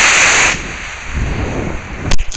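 D12 black-powder model rocket motor burning, a loud hiss picked up by a small camera mounted on the paper airplane, cutting off about half a second in at burnout. A weaker rushing wind noise on the camera's microphone follows as the plane flies on.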